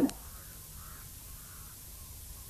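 Quiet outdoor background with three faint, distant bird calls.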